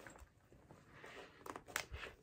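Clear vinyl zippered project bag being tugged at: faint plastic crinkling, then a few sharp clicks near the end as the stuck zipper starts to give.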